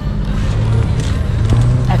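Ferrari 458 Speciale's naturally aspirated V8 running steadily at low revs, a loud even hum.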